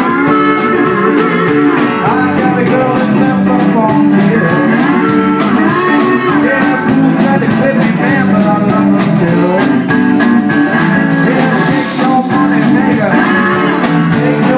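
A live band plays blues with electric guitars and a drum kit, loud and steady. The cymbals keep an even beat of about four strokes a second, and a cymbal crash comes near the end.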